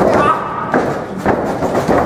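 Wrestlers' bodies hitting the ring canvas: a heavy thud right at the start, then a few more knocks, under shouting voices.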